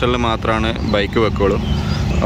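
A person talking over a steady low engine hum, with a short pause near the end.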